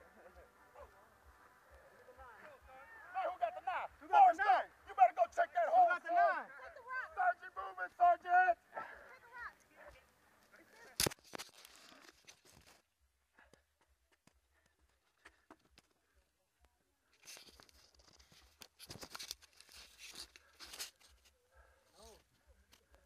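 Loud, wavy voices calling out for several seconds, a single sharp knock, then a few seconds of scraping and rustling as a person crawls into a narrow dirt tunnel.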